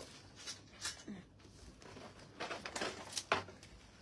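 Faint rustling and a few soft knocks of small packages being handled, with a short cluster of handling noise in the second half and the sharpest knock near the end.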